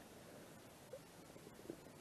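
Near silence: room tone, with two faint ticks about a second in and near the end.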